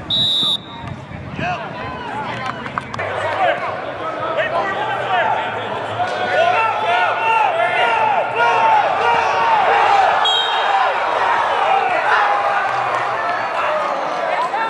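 A referee's whistle blows briefly at the start, then many voices shout over one another around a football game. A second short whistle blast comes about ten seconds in.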